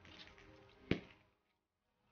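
Handling noise of thin assembly wire being wrapped around the stem and petals of a beaded flower: a short rustle with one sharp tap about a second in.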